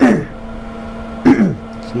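A man coughing twice, about a second and a quarter apart, each cough short and loud.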